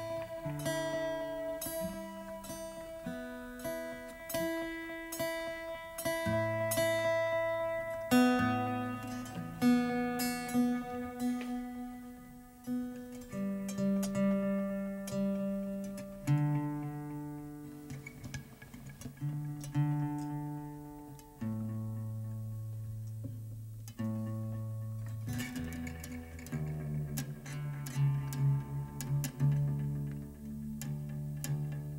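Acoustic guitars picking and strumming chords without singing, with quick strokes through the first several seconds, then slower note and chord changes.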